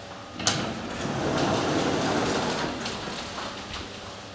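Automatic sliding doors of a 1984 Otis passenger elevator opening at the landing. A sharp click comes about half a second in, then about three seconds of sliding noise that swells and fades, with light knocks near the end.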